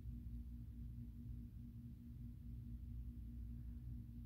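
Quiet room tone with a steady low hum at one unchanging pitch, and no other sounds.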